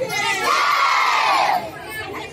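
A group of children shouting together in one long cheer, many voices arching up and then down in pitch and dying away just before the end.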